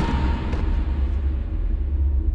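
Low, steady rumbling drone of a dark, ominous film score.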